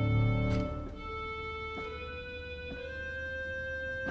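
Father Willis pipe organ playing slow, sustained chords. A full chord with deep pedal bass falls away within the first second, leaving quieter held notes in the upper and middle range, with a melody note stepping up near the end.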